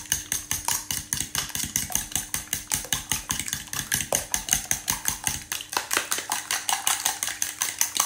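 A metal fork beating raw egg yolks and a whole egg in a mixing bowl: quick, even strokes that tick against the bowl, about five or six a second.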